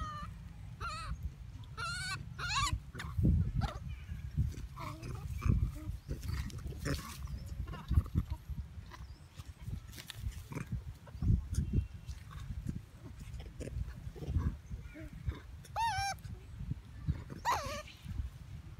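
Infant long-tailed macaque giving short, arched, high-pitched squealing cries, several early on and two louder ones near the end: distress cries as its mother grabs and pulls at it. A low rumble with thumps on the microphone runs underneath.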